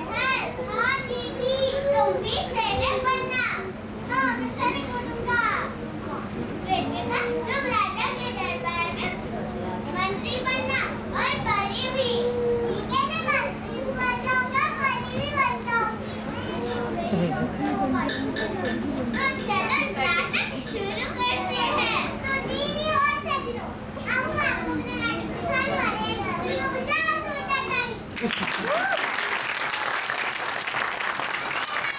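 Many young children's voices talking at once, high-pitched and overlapping. About two seconds before the end, clapping breaks out.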